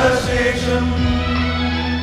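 Mixed choir singing a Malayalam Easter song in harmony, the men's voices to the fore, over steady low held notes.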